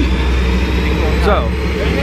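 Steady low drone of an aircraft engine running, with a man's voice saying one word over it about a second in.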